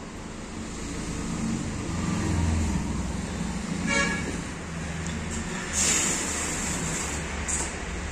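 Road traffic rumbling outside, with a short vehicle horn toot about four seconds in and a brief rush of noise just before six seconds.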